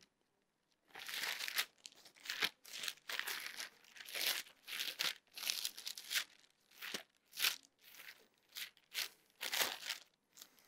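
Thin Bible pages rustling as they are leafed through by hand: about a dozen quick, separate page flips, starting about a second in.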